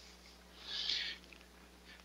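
A single short, soft hiss like a person's breath, rising and fading over about half a second near the middle; otherwise quiet room tone.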